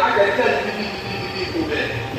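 A man speaking into a handheld microphone over a PA system. A faint thin high tone rings for about a second in the middle.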